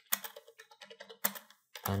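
Typing on a computer keyboard: a handful of separate keystrokes.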